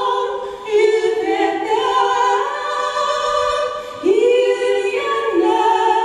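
Vocal duet of two women singing into microphones, long held notes that step from one pitch to the next.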